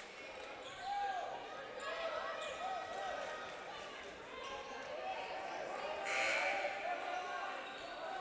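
Basketball bouncing on a gym's hardwood court, with short sneaker squeaks as players move about, and voices in the hall. A brief louder rush of noise comes about six seconds in.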